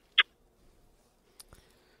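A pause in conversation holding one brief mouth sound from a speaker just after the start, then near quiet with a couple of faint small clicks about a second and a half in.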